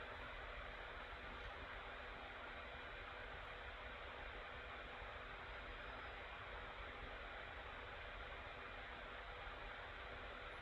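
Faint steady hiss of the recording's background noise, with a faint low hum: room tone.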